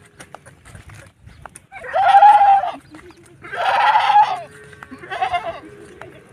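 Totapuri goats bleating: three loud bleats, the first two about a second long and the third shorter.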